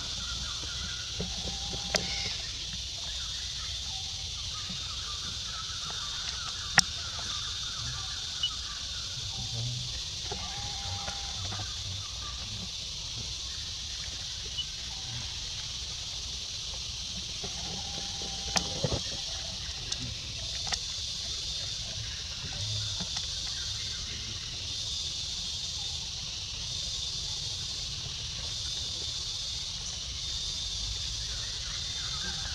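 Outdoor ambience with a steady high-pitched hiss throughout, a few short animal calls, and a handful of sharp clicks, the loudest about seven seconds in.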